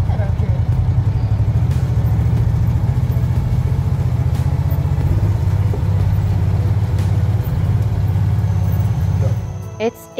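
Side-by-side utility vehicle running as it drives, a loud, steady, pulsing low rumble that fades out near the end.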